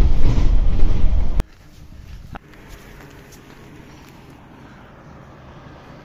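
City bus heard from inside its cabin: a loud low rumble for about a second and a half that cuts off abruptly, then a quieter steady hum.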